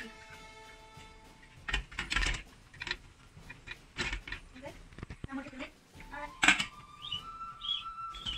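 Stainless steel steamer plates and pot clinking and knocking several times as the noodle plates are stacked in and the lid is put on, the loudest clank about six and a half seconds in. Background music plays underneath.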